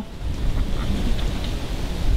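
Wind buffeting the microphone: a steady low rumble with a faint hiss above it.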